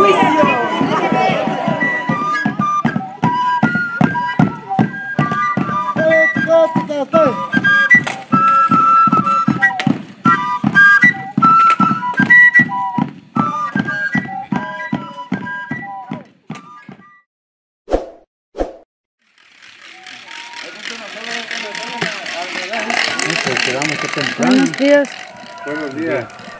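Drum beating steadily, about three beats a second, under a flute melody, as music for a dance around a fire. It stops about seventeen seconds in. After a short lull, a noisy hiss with voices in it rises.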